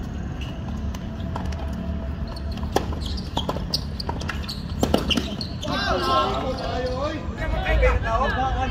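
Tennis ball being hit by rackets and bouncing on a hard court during a rally: several sharp pops spaced unevenly over the first five seconds. Voices start about six seconds in.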